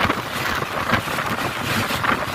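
Steady rushing road and wind noise of a vehicle travelling at speed on a highway.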